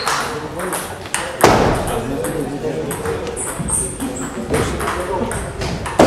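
Table tennis rally: a plastic ball clicking off bats and the table in quick succession, ending in a loud thud about a second and a half in. Then people talking.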